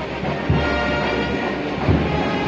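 Band music with a low drum beat about every second and a half, mixed with the steady rushing hiss of a castillo firework tower spraying sparks.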